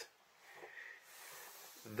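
Faint breathing: two soft, hissy breaths in a pause between spoken phrases.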